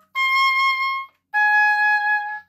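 Oboe playing two separately tongued, accented notes: a high C of about a second, a short break, then a somewhat lower note held steady. Each note starts crisply, the air built up behind the tongue on the reed and a diaphragm push giving the accent.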